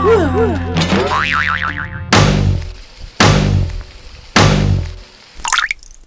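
Soundtrack sound effects: wobbling pitch swoops that turn faster and higher, then three loud booming hits about a second apart, each with a low tone that dies away, and a short crackle near the end.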